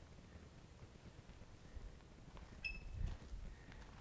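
Faint outdoor background with a low rumble, and one short, high-pitched chirp about two-thirds of the way through.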